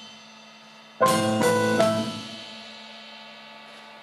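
Jazz band piano and drum kit playing a stop-time figure. A fading chord is followed, about a second in, by a quick run of accented hits: piano chords struck together with drum and cymbal strokes, left to ring out.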